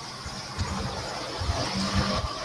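Steady background noise with a low rumble and hiss, growing slightly louder toward the end, with a brief low hum near the end.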